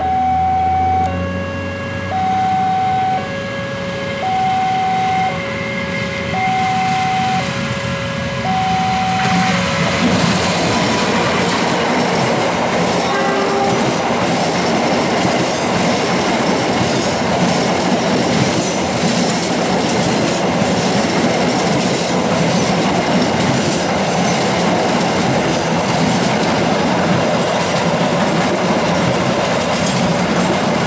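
Level-crossing warning alarm sounding two alternating tones about once a second, until a diesel-hauled passenger train drowns it out about ten seconds in. The train then passes close by, a loud steady rumble of coaches with wheels clicking rhythmically over the rail joints.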